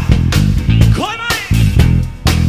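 Band music: bass guitar and guitar playing a groove over a regular beat, with a falling pitch slide about a second in.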